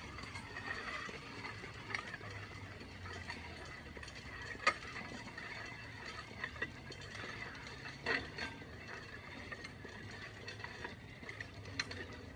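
A push sled loaded with about 420 lb of weight plates scraping steadily over asphalt, with a couple of sharp clanks about five and eight seconds in.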